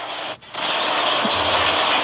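Loud, steady rushing noise on a phone microphone, with a short break about half a second in.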